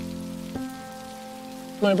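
Soft background music of held, sustained notes, the chord changing about half a second in, over a faint steady hiss.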